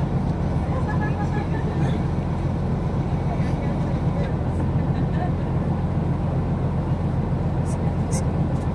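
Nissan Skyline GT-R's RB26 straight-six idling steadily, heard from inside the cabin as a low, even hum.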